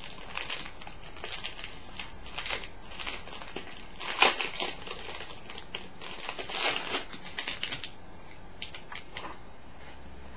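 Paper crinkling and rustling as it is handled, in irregular bursts, loudest about four seconds in and again around six to seven seconds.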